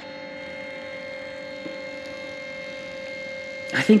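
Canon Selphy Square dye-sublimation photo printer running mid-print, its feed motor giving a steady whirring hum with a clear tone as it draws the paper through for another colour pass.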